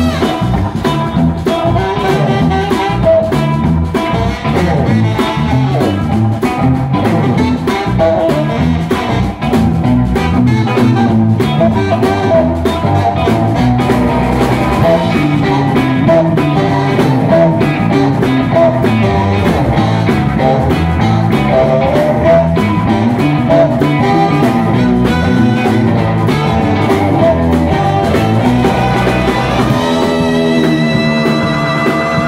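Live rock and roll band playing a twist number: electric guitar, electric bass and drum kit drive a steady beat while a saxophone plays along.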